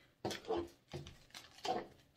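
Artificial flowers and their stems being handled on a tabletop: several short rustles and light knocks.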